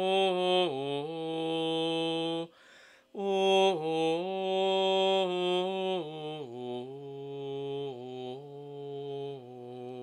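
One man's voice singing Gregorian chant unaccompanied in Latin: a single melodic line of held notes moving by steps, with a breath about two and a half seconds in. The phrase then settles lower and softer toward the end.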